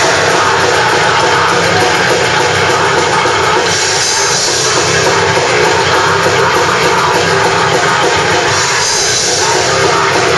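Death metal band playing live: distorted guitars and drum kit in one loud, dense, unbroken wall of sound.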